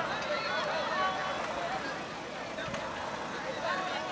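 Indistinct voices of players, coaches and spectators talking and calling out across an open football field, over a steady background hiss.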